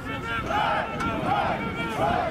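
Several people's voices talking and calling out, indistinct words carrying across an open field.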